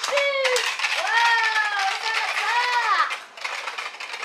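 A ripcord launcher zips as a Beyblade top is launched, then the top spins and rattles against the plastic stadium in a dense run of clicks and scrapes. Two drawn-out, high, rising-and-falling vocal sounds come over it.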